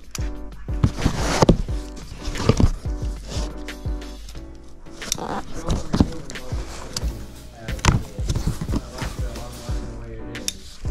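Cardboard box being opened: tape slit with a folding box cutter and the flaps pulled apart, with repeated short scrapes and knocks of cardboard. Steady background music plays under it.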